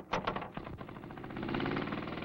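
Small engine of an M106 chemical dispenser's blower starting up, a rapid run of firing pulses that builds and grows louder about midway as it picks up speed.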